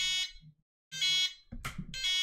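Six-channel RC transmitter beeping its power-on switch warning: a short, high-pitched beep about once a second. It sounds because not all of its switches are in the up position, and until they are the transmitter won't finish turning on.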